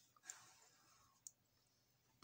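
Near silence: a faint soft rush of breath early on, then a single small click about a second and a quarter in.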